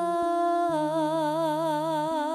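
A singer holds one long note over held keyboard notes, and vibrato sets in a little under a second in.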